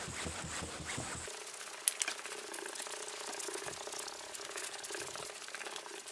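Hand wet-sanding of a car fender's old clear coat with 1500-grit sandpaper and water: a soft scratchy rubbing of wet paper on paint.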